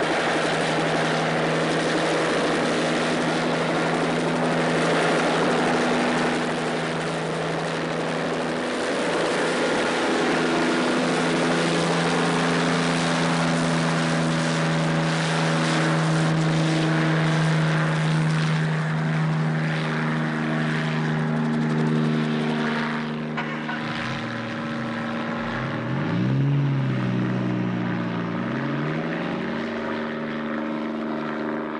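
Bell 47 helicopter's piston engine and rotor running steadily as it lifts off and flies away. Over the last few seconds the pitch wavers up and down.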